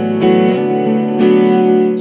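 Background music of guitar chords ringing out, with new chords struck about a quarter of a second in and again just after a second in.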